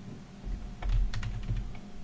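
Typing on a computer keyboard: a quick run of keystrokes about a second in, with a low rumble beneath them.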